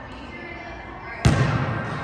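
A basketball landing once on a hardwood gym floor about a second in: a single sharp thud that rings on in the large hall.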